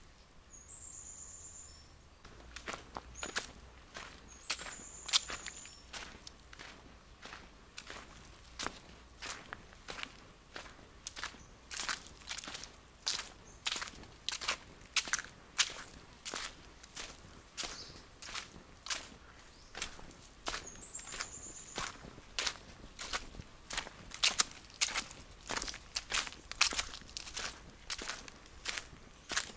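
Footsteps of someone walking at a steady pace on a dry dirt path strewn with dead leaves, about two steps a second, starting about two seconds in.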